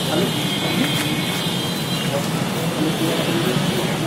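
Street ambience: indistinct voices of a group of people talking over steady traffic noise.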